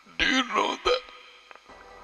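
A man's voice saying a short phrase in a quick burst. Soft background music with long held notes comes in near the end.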